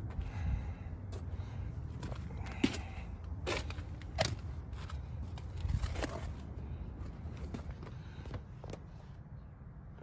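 Footsteps on gravel and scattered clicks and knocks as a car door is opened, over a low steady rumble. The knocks come irregularly through most of the stretch and die away near the end.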